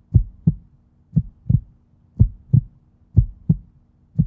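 Heartbeat-style sound effect: pairs of deep thumps repeating about once a second, over a faint steady low hum.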